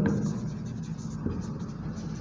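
Marker pen writing words on a whiteboard, the tip rubbing across the board's surface, quieter than the speech around it.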